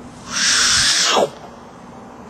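A loud hiss lasting about a second, ending in a quick falling glide.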